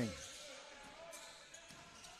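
Faint court sound of a basketball being dribbled on a hardwood floor, a few soft bounces.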